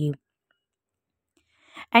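Near silence between phrases of a woman's speech: her last word cuts off just after the start, and a brief soft noise comes just before she speaks again.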